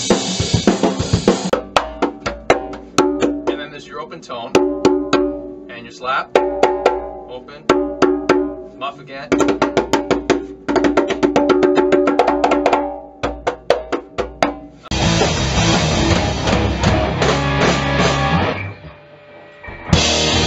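A drum kit playing for a second or so, then a conga struck with the hands: rhythmic phrases of ringing open tones and sharp slaps, with short pauses between phrases, for about thirteen seconds. Near the end a full band with drum kit comes in, dips briefly, then starts loud again.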